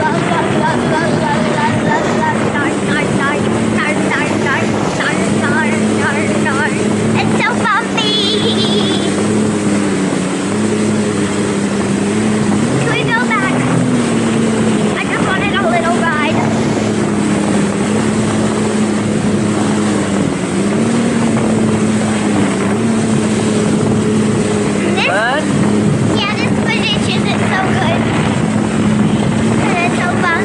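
Personal watercraft (jet ski) engine running at a steady cruising speed, its pitch dipping and rising slightly every few seconds, with rushing wind and water spray on the microphone.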